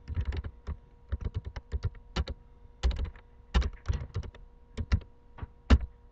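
Typing on a computer keyboard: quick, irregular key clicks in short runs, with a few louder strokes among them.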